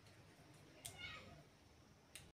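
Near-silent room tone, broken about a second in by a click and a short, faint high call that falls in pitch.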